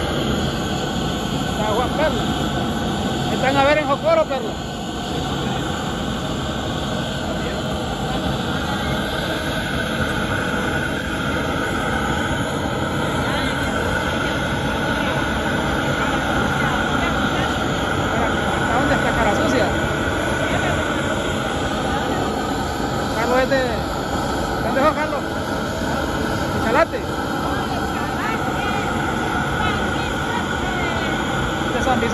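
Steady, loud drone of running machinery, holding several even tones without change, with brief snatches of voices over it a few seconds in and again past the middle.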